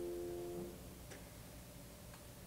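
A held piano chord rings on and then stops well under a second in, leaving a quiet hall with one faint click.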